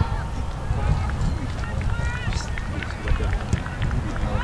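Wind buffeting the camera microphone as a heavy low rumble, with faint distant shouts and calls from players.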